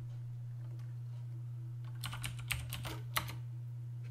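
Computer keyboard being typed on: a quick run of about six keystrokes starting about halfway in, over a steady low hum.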